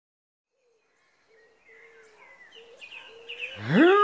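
Silence, then faint birdsong fades in from about halfway, with soft chirps and twitters. Near the end a cartoon bee's voice starts a loud grunt that rises in pitch.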